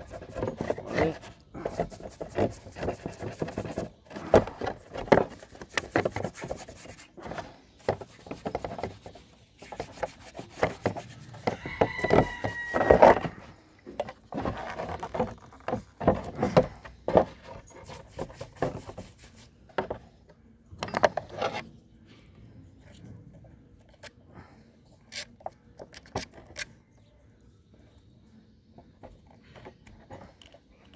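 A small brush scrubbing grime from a chainsaw's sprocket and clutch housing with gasoline, in quick, irregular scratchy strokes, with a short high squeak near the middle. The scrubbing thins out to a few light clicks and taps over the last third.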